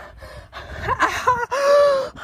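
A young man's gasping, cry-like vocal sounds in short bursts, then one long held open-mouthed cry near the end, the loudest part.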